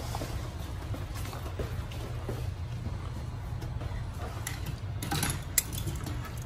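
A steady low hum, with a few faint plastic clicks and one sharp tap near the end as an ignition coil is handled and fitted onto a dummy spark plug wire.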